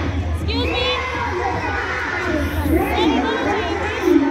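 A large group of children shouting and cheering together, many high voices overlapping, with sharper high calls standing out about half a second in and near the three-second mark. A steady low rumble runs underneath.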